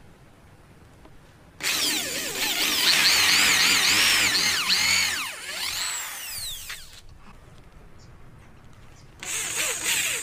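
Small electric drill boring a pilot hole into hardwood: after a short quiet start its high whine comes in about one and a half seconds in, wavering up and down in pitch as the bit bites and eases, fades out around seven seconds, and starts again briefly near the end.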